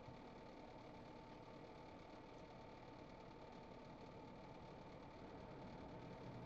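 Near silence: faint steady room tone with a thin, steady high tone.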